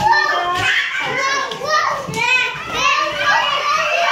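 Several young children shouting and squealing in play, with high-pitched voices throughout.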